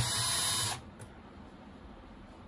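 Cordless drill-driver running in one short burst of under a second, a steady motor whine as it backs a screw out of the machine's metal back panel, then stopping. A light click follows about a second in.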